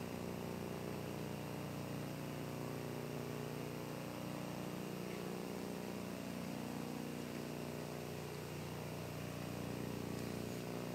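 Steady low hum with hiss: the room tone of a large hall, unchanging throughout.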